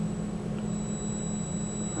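Steady electrical hum with a thin, steady high whine from a DIY DC motor controller test rig, its IGBTs driving about 500 amps into an inductor bank at full throttle.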